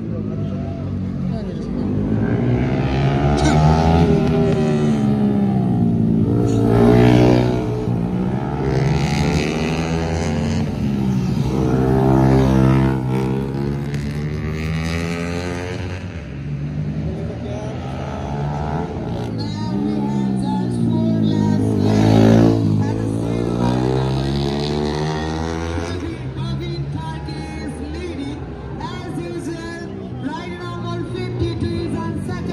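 Racing motorcycle engines revving up and down as bikes pass close by on the circuit and fade away again, one after another. The passes are loudest about seven seconds in and again about twenty-two seconds in.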